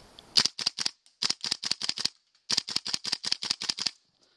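Airsoft gun firing: a single shot, then two quick strings of sharp cracks at about seven or eight a second, with a short break between them.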